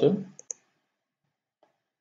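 Two quick computer mouse clicks about half a second in, then near silence.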